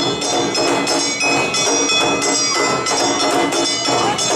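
Awa Odori street band playing the dance's rhythmic music, with kane hand gongs ringing brightly over drums and other instruments.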